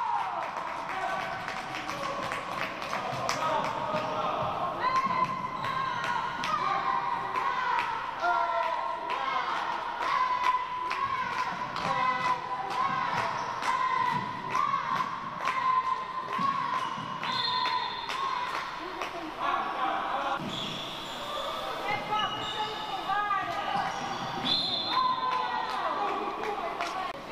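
A handball bouncing again and again on a wooden sports-hall floor during play, among players' and spectators' voices, all echoing in the large hall.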